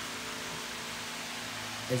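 Steady, even background hiss with no distinct event, and a voice starting to speak right at the end.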